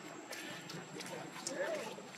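Indistinct voices in the background, with scattered light clicks and taps throughout.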